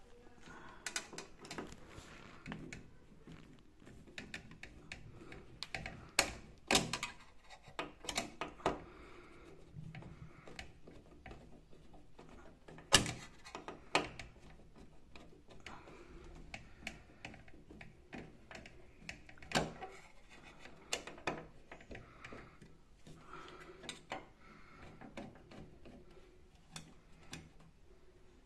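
Scattered clicks and knocks of a screwdriver and metal parts as the flue elbow's flange is screwed down onto the sheet-metal top of a gas water heater. The sharpest knock comes about halfway through.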